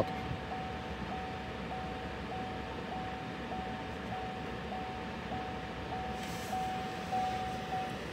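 A car's in-cabin warning chime: one steady mid-pitched tone, restarting about every 0.6 s and repeating without pause, over a low hum of cabin noise.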